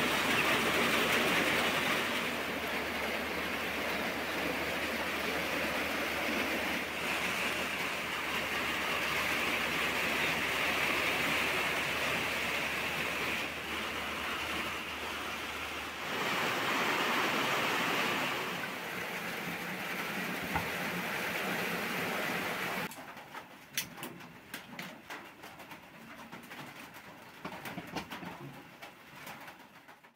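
Steady rain falling, an even hiss, which shifts in tone about halfway through. About three-quarters of the way in the rain sound drops away, leaving a quiet room with a few faint knocks.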